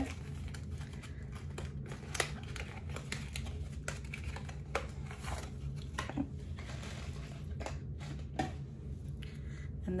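Packaging of a donut-shaped eyeshadow palette crinkling and rustling as it is handled and opened, with scattered small clicks and taps, over a low steady hum.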